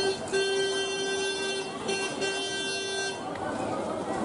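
A vehicle horn honking: a long blast, a short toot, then another long blast that stops about three seconds in, over street noise and voices.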